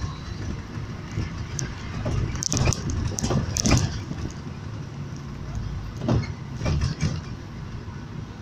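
Road noise inside a moving vehicle: a steady low rumble from the engine and tyres, with bursts of clattering and knocking a couple of seconds in and again near the end.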